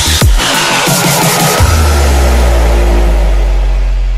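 Electronic dance track: kick drums with a falling pitch in the first half-second, then after about a second and a half one long, low bass note held, which begins to fade near the end as the track closes.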